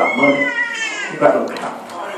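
A man's preaching voice, with a high-pitched cry that slides slowly downward in pitch over about the first second.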